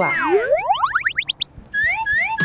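Cartoon-style editing sound effect: a short falling whistle, then a quick run of rising sweeps that climb higher and higher, and near the end a couple of short bouncy chirps.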